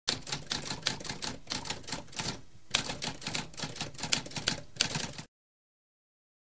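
Manual typewriter keys clacking in quick, uneven runs, with a brief pause about halfway, stopping abruptly a little after five seconds.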